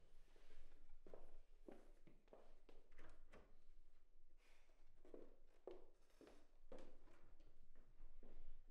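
Faint footsteps on a hard floor: a run of soft, irregular steps at roughly two a second, in a quiet small room.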